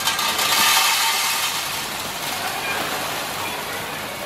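Silica cat-litter crystals pouring from a bag into a litter pan: a steady rushing hiss that starts suddenly, is loudest over the first second or so, then slowly tapers off.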